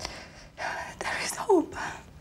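Whispered speech in a few breathy bursts, with one short voiced sound falling in pitch about one and a half seconds in.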